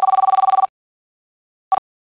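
Mobile phone ringing with a fast-pulsing two-tone ring: one ring of about a second, then a brief start of another ring that cuts off as the call is answered.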